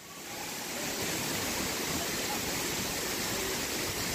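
Steady rush of running water, building up over the first second and then holding level.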